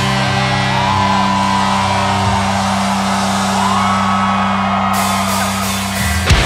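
Live symphonic death metal: the band and orchestra hold a low, sustained chord with the drums stopped, while a crowd shouts and whoops over it.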